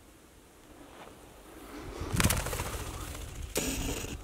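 Red grouse flushing from heather: a sudden loud whirr of rapid wingbeats about two seconds in, fading as it flies off, with a second shorter burst near the end.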